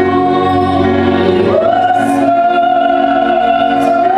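Live music: a woman's voice and a choir holding long sung notes with vibrato over a symphony orchestra, stepping up in pitch about one and a half seconds in.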